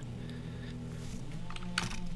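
A few faint computer keyboard clicks, most of them near the end, over a low steady hum.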